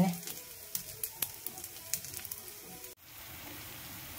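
Oil sizzling under small fish frying in a flat pan, with scattered sharp crackles. About three seconds in the sound changes abruptly to a steadier, quieter sizzle.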